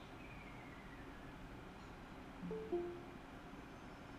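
Faint steady background hiss, with a brief two-note tone about two and a half seconds in, the second note lower than the first.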